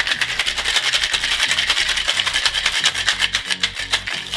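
Ice shaken hard inside a Boston cocktail shaker (metal tin capped over a mixing glass): a fast, even rattle of rapid strokes throughout.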